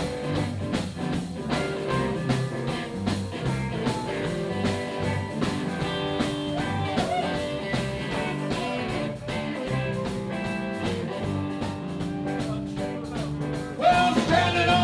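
Live blues band playing an instrumental passage between verses: electric guitar over a steady drum beat.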